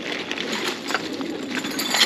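Hands rummaging in a black plastic trash bag of toys: the plastic bag crinkling while loose Lego bricks click and clatter against each other, with a louder clack near the end.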